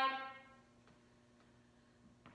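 The drawn-out end of a woman's spoken word, fading within the first half second. Then quiet room tone with a steady low hum and a few faint taps.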